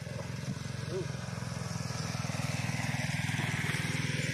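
An engine running with a rapid, even low putter that slowly grows louder.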